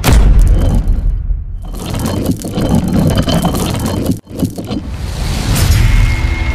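Cinematic logo-intro sound effects: a heavy boom at the start, then a long scraping, rumbling stretch that cuts out sharply about four seconds in, followed by a rising swell.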